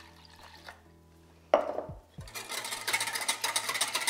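Cold water poured into a glass jug of dissolved gelatin, followed about two seconds in by a wire whisk stirring fast, its wires clicking rapidly against the glass and growing louder.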